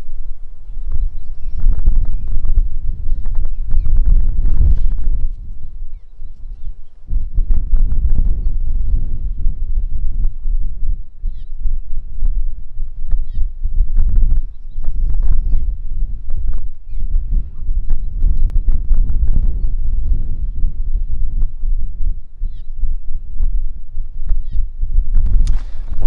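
Wind buffeting the camera microphone: a loud, gusting low rumble that swells and dips irregularly throughout, with a few faint high chirps scattered through it.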